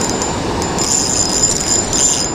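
Spinning reel working against a hooked channel catfish: a high, metallic whir from the reel starts a little under a second in and runs to the end, over the steady rush of a small waterfall.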